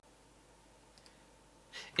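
Near silence with faint room tone and a single faint click about a second in, then a breath and the start of speech near the end.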